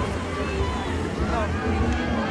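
Outdoor trackside background: a steady low rumble of wind on the microphone, with faint distant voices calling now and then.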